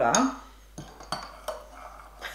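A metal spoon stirring powder into a glass of water, clinking sharply against the glass a few times at irregular intervals.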